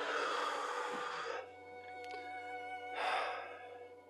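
A man sighs heavily: a long breath out at the start, then another breath about three seconds in. Soft sustained background music plays under it.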